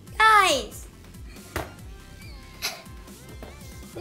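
A high voice cry sliding down in pitch near the start, over background music, followed by two sharp knocks about a second apart.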